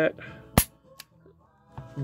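Charter Arms Pit Bull 9mm stainless revolver dry-fired in single action: one sharp metallic snap of the hammer falling about half a second in, then a fainter click a moment later.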